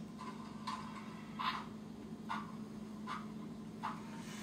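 SoundTraxx Tsunami2 sound decoder in a model steam locomotive playing soft steam exhaust chuffs at slow speed, about one every 0.8 seconds, over a faint steady hum. This is the conventional two-cylinder chuff cadence, four chuffs per revolution of the driving wheels.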